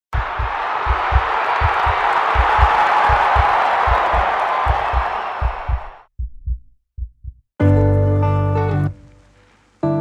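Heartbeat sound effect thumping in lub-dub pairs, a little under a second apart, under a steady rushing noise that cuts off about six seconds in. A few more single heartbeats follow, then a loud held chord with deep bass near the end.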